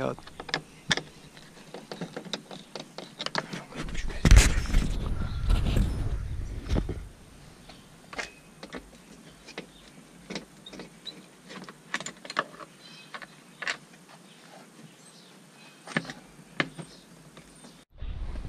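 Scattered clicks and scrapes of a screwdriver and plastic door-panel trim on a Nissan Pathfinder being pried and lifted out, with a louder stretch of low rustling from about four to seven seconds in.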